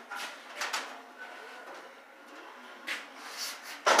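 A car's tilt front end being shut: a few light clicks and rattles, then a single heavy clunk near the end as it comes down and closes.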